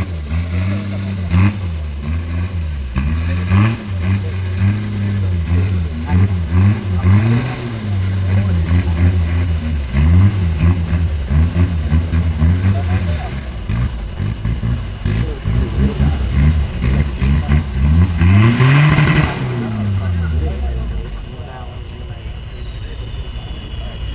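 A modified offroad race 4x4's engine revving hard in repeated surges as it churns through mud. About twenty seconds in the engine falls away, leaving a faint steady high whine.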